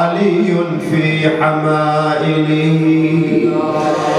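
A male mourning reciter (mulla) chanting an Arabic elegy into a microphone. He holds long, drawn-out notes in a slow, bending melody.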